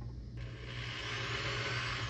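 Black & Decker drill starting up about a third of a second in and whirring as its small bit bores a pilot hole into painted wood for a cup hook.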